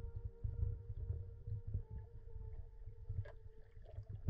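Muffled, uneven low rumble of water heard through a camera held underwater, with a few faint steady hums above it.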